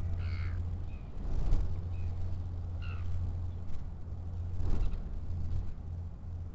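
Wind buffeting an outdoor microphone, a steady low rumble with gusts swelling about a second and a half in and again near the end, and a few short bird calls on top.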